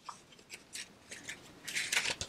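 Paper cardstock flaps being folded and tucked under by hand, with light rustling and sliding of paper on paper. It is faint at first and a little busier near the end.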